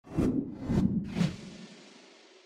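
Logo-intro sound effect: three quick whooshes with low thumps, about half a second apart, then a long tail fading away.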